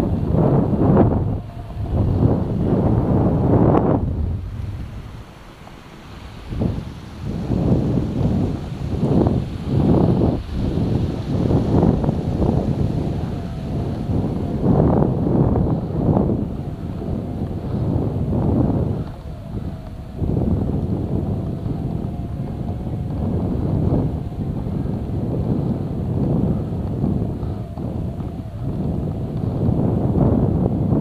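Wind buffeting the microphone of an action camera on a vehicle travelling slowly over a snowy road, in irregular loud swells with a brief lull about five seconds in, over a low vehicle rumble.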